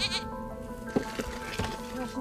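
Background music of sustained tones with livestock bleating over it: a wavering bleat that ends just after the start, then shorter calls about a second in.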